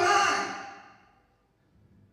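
A man's voice through a handheld microphone, the breathy tail of a drawn-out utterance fading away over about the first second, followed by near silence.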